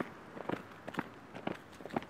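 Footsteps of two people walking at an easy pace on an asphalt street, hard steps landing about twice a second.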